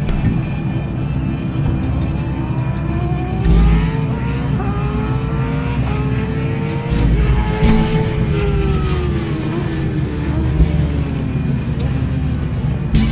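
A vehicle engine revving up and down in long rising and falling sweeps over a low rumble, with music beneath.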